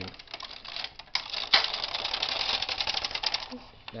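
Bond Incredible hand knitting machine's carriage being pushed across the needle bed to knit a row, a rapid run of clicks as it passes over the needles. The clatter starts about a second in and dies away near the end.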